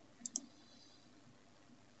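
Near silence with two faint, quick clicks in a row about a quarter of a second in.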